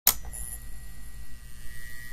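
A sharp click, then a steady electrical hum with a faint high whine, wavering in level: the buzz of a flickering light bulb, as a sound effect.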